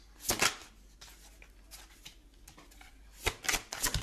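Tarot deck being shuffled by hand, a brief flutter of card clicks about half a second in and another just before the end.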